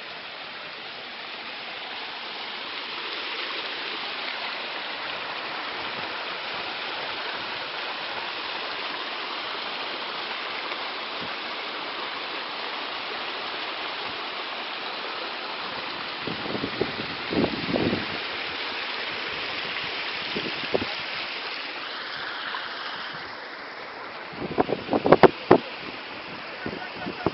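Rushing stream water, a steady hiss. A few brief knocks come over it later on, with the loudest cluster near the end.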